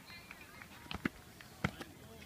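A triple jumper's feet striking the runway: sharp single impacts about a second in and twice more near the end, the bounding strides of the hop and step.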